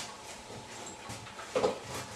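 A dog gives a short whimper about one and a half seconds in.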